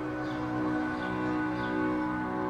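Background score music: a chord of sustained, steady held notes.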